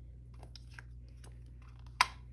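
Quiet pause with a steady low hum and faint scattered clicks, ending on one sharp click.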